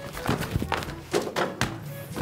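Soccer ball being kicked and juggled with the feet: a run of several dull thunks, about five in two seconds.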